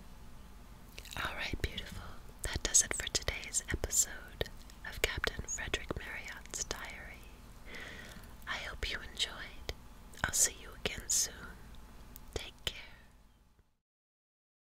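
A woman whispering close to the microphone, with many sharp mouth clicks among the words. It fades out to dead silence shortly before the end.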